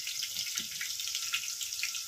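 Chopped garlic and onion frying in hot oil in a pressure cooker for a tadka: a steady sizzle with small crackles.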